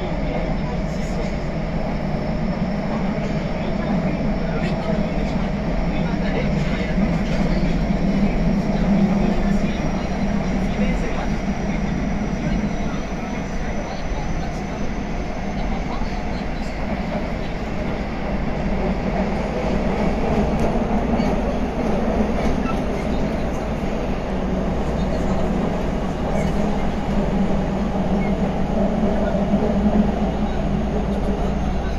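Running noise inside a Meijō Line 2000 series subway car underway between stations: a steady rumble of wheels and running gear, with a faint high whine that rises slowly in pitch over the first half.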